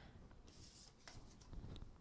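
Near silence with a faint rubbing scrape of a tarot card being slid off the tabletop and picked up, with a couple of light ticks near the end.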